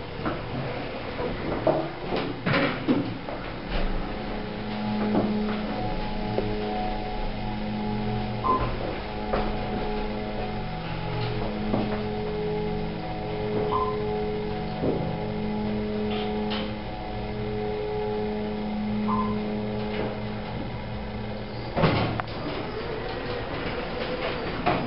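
Dover hydraulic elevator ride: a few clunks as the doors close, then a steady droning hum, with a few layered tones, for about eighteen seconds as the car rises. A short high blip sounds about every five seconds. A loud knock comes as the car stops and the doors open near the end.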